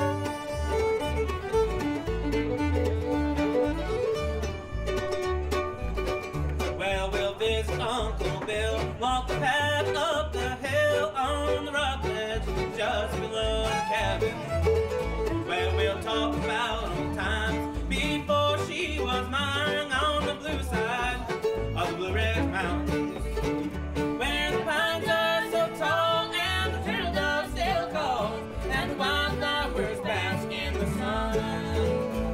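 Live bluegrass band playing: fiddle leads at first, then about seven seconds in a man and a woman start singing together over mandolin and acoustic guitar, with a steady low beat underneath.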